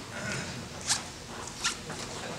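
Billiards hall ambience: a low murmur of background voices with two short, sharp clicks a little under a second apart, the first about a second in.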